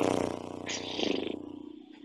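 A long breath blown out through loose, flapping lips (a lip trill, 'flutter lips'), the lips buzzing rapidly over a low hum and fading away over about two seconds, as a relaxing breath out.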